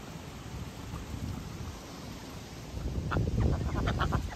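Wind rumbling on the microphone, growing stronger a little before the last second, with a few short Pekin duck quacks near the end.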